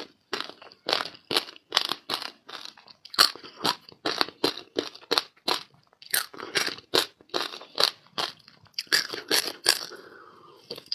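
Ice coated with passion fruit pulp being crunched and chewed close to the microphone: rapid sharp crunches, about three a second.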